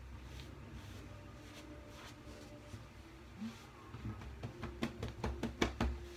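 A cotton towel dabbing and rubbing on a freshly shaved face and neck: soft rustles and pats that start about halfway through and come quicker near the end, over a low steady room hum.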